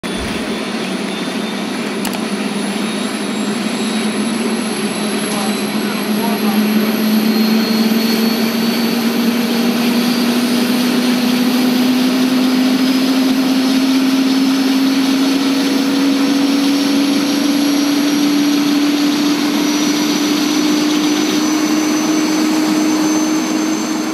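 Single-engine turbine helicopter running up for takeoff, its turbine whine and main rotor rising slowly and steadily in pitch. It grows louder over the first several seconds, then holds.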